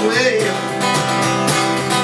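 Acoustic guitar strummed in a steady rhythm, with the tail of a sung line trailing off in the first half-second.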